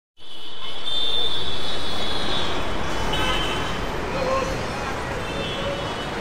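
Busy city street traffic, with car horns sounding several times over the steady rumble and people's voices in the background.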